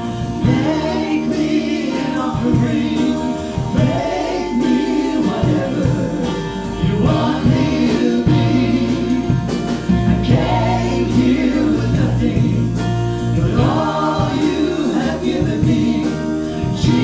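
Live church worship band playing a slow worship song, several voices singing the chorus together over keyboard and drums with sustained bass notes.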